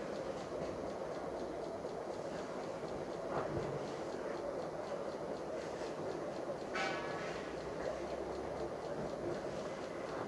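Low, steady background hum of a room, with a couple of brief faint sounds about three and a half and seven seconds in.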